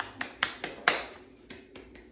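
A man's hands clapping lightly, about eight quick, uneven claps, the loudest just under a second in.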